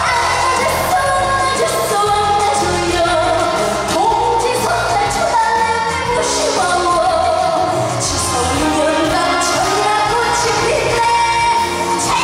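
A woman singing a Korean trot song live into a handheld microphone over a loud backing track with a steady bass beat.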